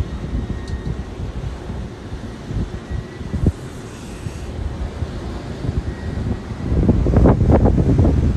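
Strong wind buffeting a phone's microphone, a low rumbling roar that swells louder near the end.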